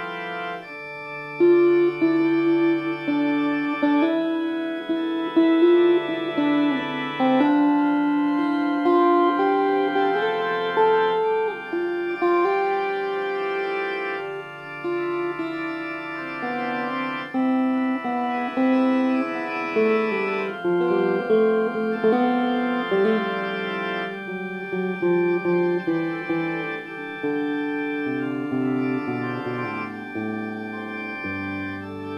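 Instrumental psychedelic music: an organ holding chords that shift every second or two, with a hollow-body electric guitar played through a Fender combo amp.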